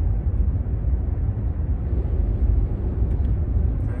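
Steady low road and tyre rumble inside the cabin of a Waymo Jaguar I-PACE electric car cruising at about 35 mph, with no engine sound.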